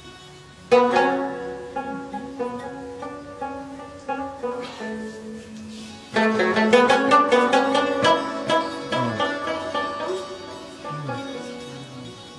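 Afghan instrumental music on hammered santur and plucked Afghan rubab: a quiet gap, then quick struck and plucked notes come in about a second in and thicken into a louder, busier passage around the middle. Tabla strokes join, the bass drum sliding down in pitch a few times near the end.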